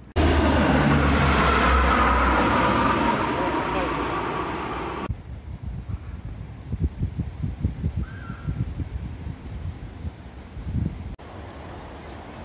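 Strong wind buffeting the microphone, loud for about five seconds and cutting off abruptly. Then quieter, irregular gusts thump against the microphone, with one short higher sound near the middle.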